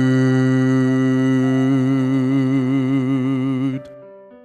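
A male bass voice holds one long sung note on the word 'good', a vowel sung at a steady pitch that takes on a slow vibrato midway and stops shortly before the end.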